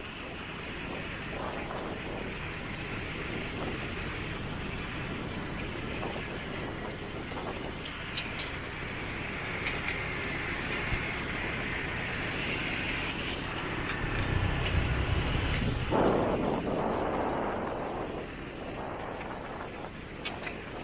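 Motorbike and scooter traffic on the bridge lane, a steady road noise with one louder, rumbling pass about three quarters of the way through. A faint high whine steps up in pitch around the middle.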